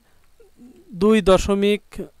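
A person's voice speaking briefly, starting about a second in after a quiet pause.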